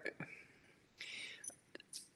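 A quiet pause in speech: a woman draws a short, soft breath about a second in, with a few faint mouth clicks around it.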